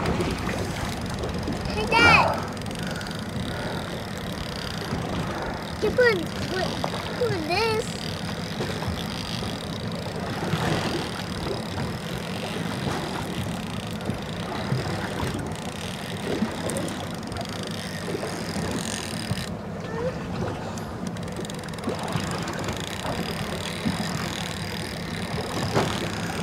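Steady low hum and wash of a boat at sea, holding at an even level throughout. A few short vocal exclamations come about two seconds in and again around six and seven seconds.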